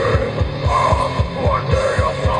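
Death metal band playing live, picked up by a camcorder's built-in microphone. A fast, even run of bass-drum beats, about seven a second, dominates over the rest of the band.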